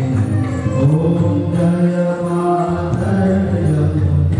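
Voices chanting a Hindu devotional aarti hymn, drawing out long sustained notes that step up and down in pitch.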